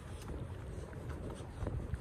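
Wind buffeting the microphone: an uneven low rumble throughout, with a few faint clicks.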